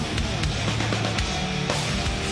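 Heavy metal band playing live: distorted electric guitars over bass guitar and drums, loud and dense, with sharp drum hits cutting through.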